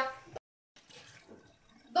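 A voice trails off, then a brief dead-silent gap where the recording is cut, followed by near silence with only faint room noise.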